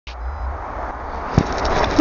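Rushing noise with a low rumble from wind and handling on a small keychain camera's microphone as the camera is moved, growing slowly louder, with one sharp knock about one and a half seconds in.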